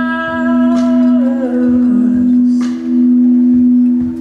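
Live band music: a woman sings a long held note that slides down about a second and a half in, over a sustained keyboard chord, with a few drum-kit hits.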